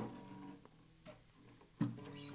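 Open strings of a vintage Fender Newporter acoustic guitar ringing faintly as the guitar is handled and lifted. The strings sound once at the start and again near the end, each ring fading within about half a second.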